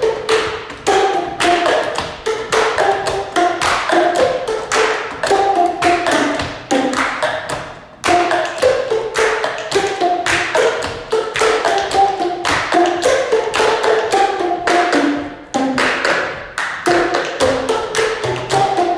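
Boomwhackers, tuned plastic tubes, struck in an ensemble to play a melody of short pitched notes in a steady rhythm, mixed with taps and knocks of plastic cups on a tabletop and hand claps. The playing pauses briefly about eight seconds in and again about fifteen seconds in.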